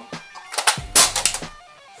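Saiga-12 shotgun's empty box magazine being released and pulled from the magazine well: a quick run of sharp metal clacks, loudest about a second in.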